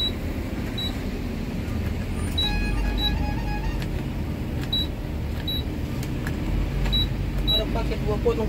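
Bus engine running at low speed, heard from the driver's cab, with a short high beep that repeats in pairs about every second. A brief single-pitched tone sounds about two and a half seconds in.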